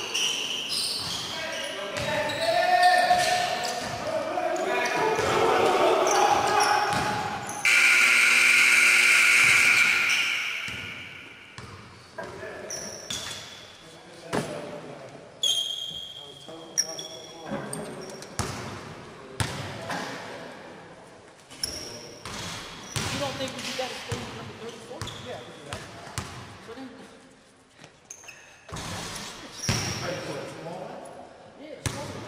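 A basketball bouncing on a gym floor as players dribble, with short high sneaker squeaks and shouting voices in a large echoing hall. A loud steady buzz lasts about three seconds, roughly a third of the way in.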